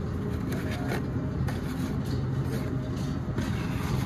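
A steady low rumble of background noise with a few faint clicks and rustles from Hot Wheels blister-card packages being handled on a cardboard display.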